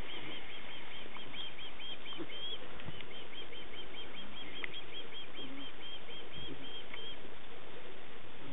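A small bird singing a fast, even string of short high chirps, about five a second, that stops about seven seconds in, over a steady outdoor hiss.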